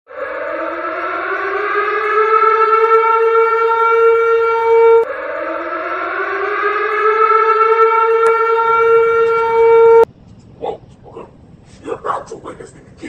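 A civil-defense style warning siren, sounded twice as an emergency-broadcast alert. Each wail climbs in pitch and then holds for about five seconds, and the siren cuts off suddenly about ten seconds in.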